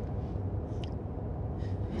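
Low, steady rumble of a car driving, heard from inside the cabin, with a single faint click about a second in.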